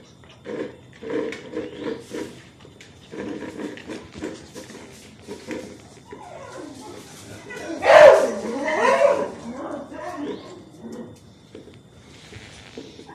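Beagle puppies eating kibble from plastic bowls: quick, repeated chewing and bowl noises. About halfway through, a puppy starts whining cries that rise and fall in pitch, loudest about eight seconds in.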